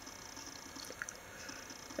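Faint room tone with a few small, soft clicks, one about halfway through.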